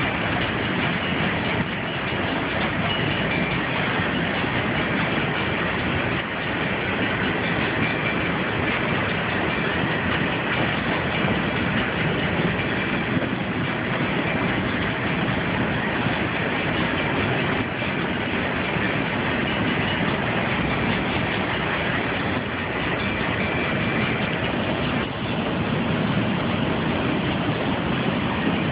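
Long freight train rolling past: a steady, unbroken noise of railcar wheels on the rails that keeps up without a break.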